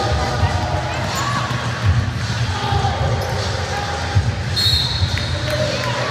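Irregular dull thuds with voices in a large, echoing hall, and a short high squeak about four and a half seconds in.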